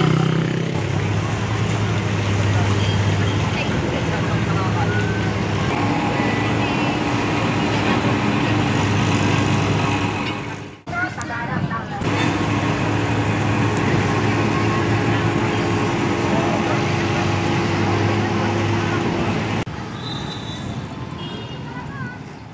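Busy market street ambience: many people talking, with the steady hum of vehicle engines running. The sound cuts out briefly about eleven seconds in and turns quieter near the end.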